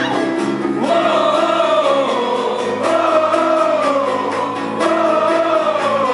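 Live acoustic performance: a female lead vocalist sings three long phrases with vibrato, each about two seconds, over sustained acoustic guitar and keyboard chords.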